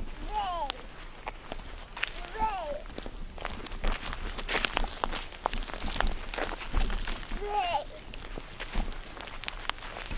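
Footsteps of two people walking through dry grass and crop stubble: many short crisp crunches. A few brief falling vocal sounds come near the start, about two and a half seconds in, and about seven and a half seconds in.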